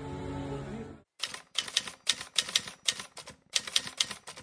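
A held music chord cuts off about a second in, followed by a typewriter sound effect: quick, irregular runs of sharp clacking keystrokes.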